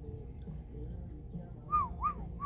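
African grey parrot giving a single clear whistle near the end, a note that arches up and then falls in pitch, over a low steady room hum.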